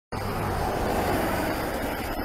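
Steady rush of highway traffic and road noise from vehicles on the interstate.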